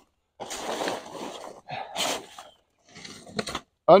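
Plastic tarp rustling and crinkling in several bursts as it is pulled back off a pile of crushed stone, with a few sharp crackles near the end.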